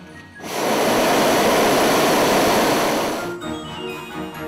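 A hot air balloon's pair of propane burners firing one blast of about three seconds, starting about half a second in and cutting off near the end, to heat the air in the envelope.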